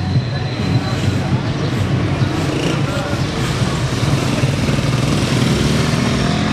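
Busy town street noise: motorcycle and tricycle engines running and passing, with people's voices in the background.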